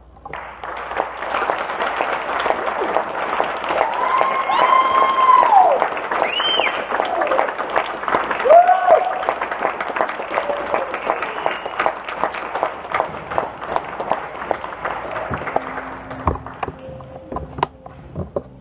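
Audience applauding after a concert band piece: the applause starts suddenly, with a few cheers and whoops in the first half, and dies away near the end.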